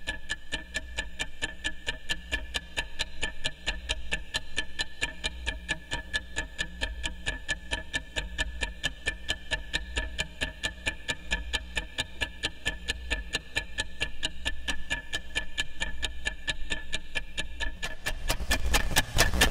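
Mechanical kitchen timer ticking, picked up by a piezo contact mic and run through a modular synthesizer as an electroacoustic piece: an even tick about four times a second over a steady high drone tone and a low hum.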